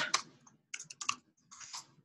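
Computer keyboard being typed on, short sharp key clicks in a few quick runs as a file name is entered and confirmed.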